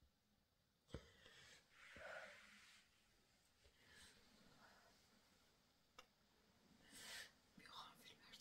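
Faint whispering in short breathy bursts, with a sharp click about a second in and another near six seconds.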